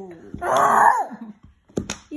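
A child's drawn-out whining cry, about half a second long, falling in pitch as it ends, followed by a sharp click near the end.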